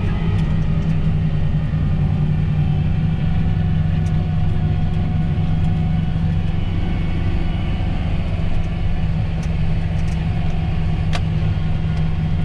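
John Deere tractor engine running steadily under load, heard from inside the cab while it pulls a seed drill, with a few faint ticks over the drone.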